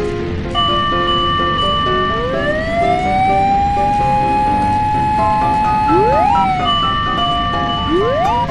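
Fire engine siren sound effect: a wail that rises about two seconds in, holds, then falls, followed by quick rising whoops, over a bouncy background melody.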